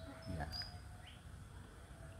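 A quiet lull with a few faint, short bird chirps over low background hum.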